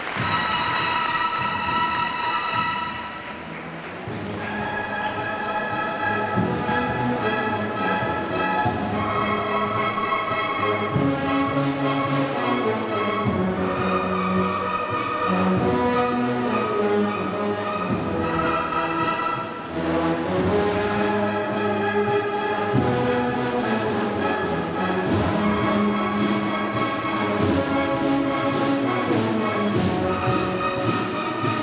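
Cornet-and-drum band (banda de cornetas y tambores) playing: a held brass chord for about three seconds, a short drop, then the full band with a melody over low brass.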